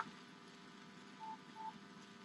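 Two short, faint electronic beeps of the same pitch, about a third of a second apart, a little past the middle.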